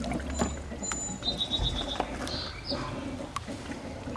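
Water sloshing and lapping in a hot tub as a person moves in it, over a low steady rumble, with scattered small knocks and clicks.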